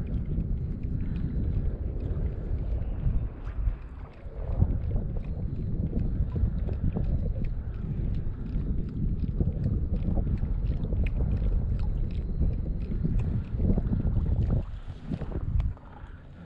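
Wind buffeting the microphone in gusts, with small waves lapping against a kayak hull on choppy open water.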